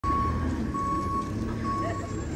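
Backup alarm of a JCB telehandler beeping, about one beep a second, three in all, over the machine's steady engine rumble.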